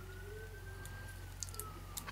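A faint siren wailing in the background: one slow rise and fall in pitch. A few light clicks of the pistol slide being handled come near the end.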